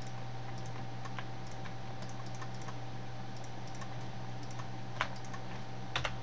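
Scattered faint clicks of a computer mouse and keyboard, with a sharper click about five seconds in and another near the end, over a steady low hum.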